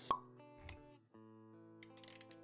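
Intro sound effects and music for an animated logo: a short, sharp pop just after the start, a softer pop with a low thud a little later, then held synth-like notes with a few light clicks near the end.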